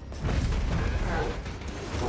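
Mechanical creaking and grinding with a low rumble from a TV drama's sound effects, starting suddenly a fraction of a second in.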